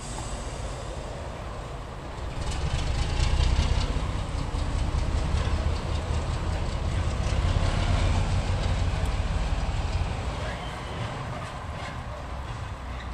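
Diesel shunting locomotive's engine working as it pulls away: a deep rumble that builds about two seconds in and eases off near the end, with light clicking from the wheels on the track.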